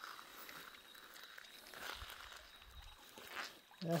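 Faint, steady rush of a shallow, muddy river flowing over a stony bed.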